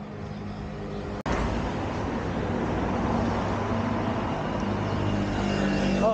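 A motor-vehicle engine running steadily, with road traffic noise. About a second in there is an abrupt break, after which the running sound comes back louder.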